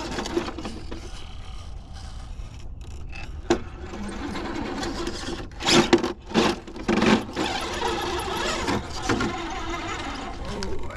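Electric motor and geared drivetrain of a Redcat Ascent RC rock crawler whining steadily at low speed as it climbs a rock. A few louder knocks come about halfway through, as it bumps over the rock.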